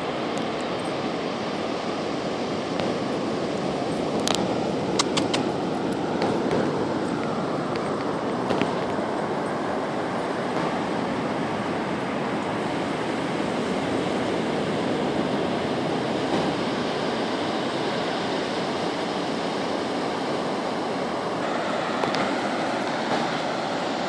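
Ocean surf breaking and washing up a sandy beach: a steady rushing noise, with a few faint clicks between about four and nine seconds in.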